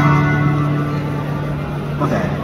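Amplified acoustic guitar: one chord strummed right at the start, then left to ring and slowly fade.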